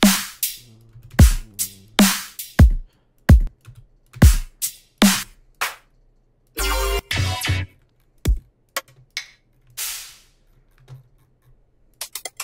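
Electronic dubstep drum samples playing: punchy kicks whose pitch drops sharply, and snare hits, in a loose pattern. About six and a half seconds in comes a dense, gritty sample lasting about a second, then a short swell near ten seconds and a few faint ticks.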